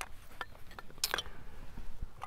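A few light clicks and clinks as fatwood sticks and a small metal tin are handled, the clearest about a second in.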